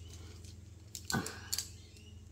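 Cap of a gold paint pen being tugged and twisted loose by hand: quiet handling with a short sharp click about one and a half seconds in.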